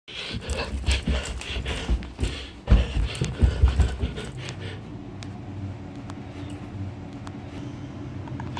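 Quick footsteps thudding up stairs while the person climbing breathes hard in short, rhythmic breaths for the first four seconds or so. After that it goes quieter, leaving a steady low hum and a few light clicks.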